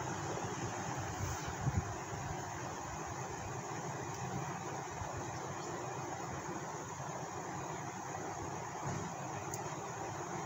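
Steady background room noise, an even hiss with a faint low rumble and no speech.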